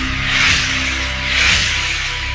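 Electronic logo-intro music: a held synth pad over a low drone, with whooshes swelling and fading about once a second, twice in this stretch.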